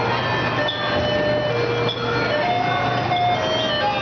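Arcade din: short electronic tones and jingles at many different pitches, overlapping and coming and going, over a steady low hum and a dense wash of background noise.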